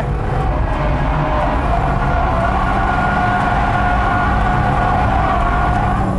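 Mazda RX-7 FD3S twin-rotor rotary engine heard from inside the cabin, running hard at high revs through a corner. The pitch climbs a little over the first two seconds, then holds steady as a sustained high tone over a low rumble.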